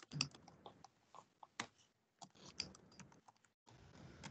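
Faint, irregular keystrokes on a computer keyboard, a few clicks a second with uneven gaps.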